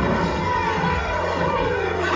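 Film soundtrack of a car stunt: background music mixed with vehicle noise.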